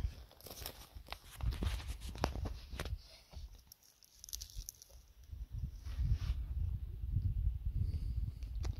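Dry twigs and brush crackling and rustling in irregular short clicks as a shot cottontail rabbit is reached for by hand and pulled out of a rock crevice. Handling rumble and scuffing grow denser near the end as the rabbit is lifted out.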